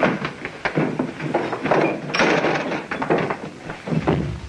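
A short scuffle on an old film soundtrack: a quick, irregular run of thuds, knocks and shuffling.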